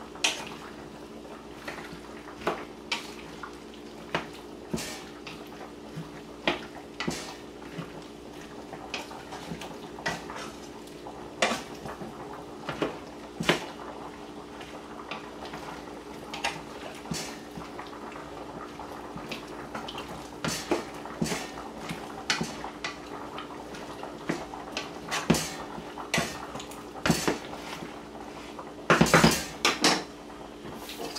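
A wooden spoon stirring sliced squash, zucchini and onions in a pot, with irregular knocks and scrapes against the pot's sides over a steady low hum. A louder cluster of clatters comes near the end.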